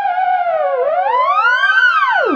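Theremin-style science-fiction music: wavering, wobbling tones that sag in pitch and then glide upward near the end.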